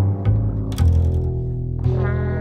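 Live small-ensemble jazz: an upright double bass plucking low notes, with several sharp attacks, under held brass tones from trombone and trumpets.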